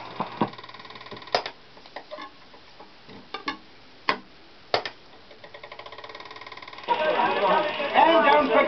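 Sharp clicks and knocks as a shellac gramophone record is turned over and set back on the turntable, then faint rapid ticking. About seven seconds in, the next side starts playing with a recorded voice over surface noise.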